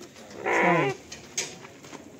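A young sheep bleats once, a short wavering call that falls slightly in pitch, about half a second in. A brief click follows.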